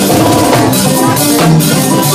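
Live band music, a drum kit and keyboard playing with a steady beat.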